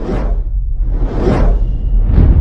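Cinematic intro sound effects: two whooshes about a second apart over a deep, steady rumble.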